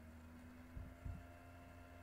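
Near silence: a faint steady hum of room tone, with two soft, low thumps about a second in.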